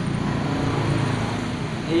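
A road vehicle passing by, a steady engine-and-tyre rumble that grows slightly louder.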